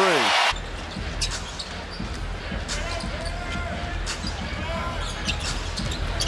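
Basketball arena sound: a loud burst of crowd cheering cuts off abruptly about half a second in. After that comes a steady crowd murmur with scattered ball bounces on the hardwood court.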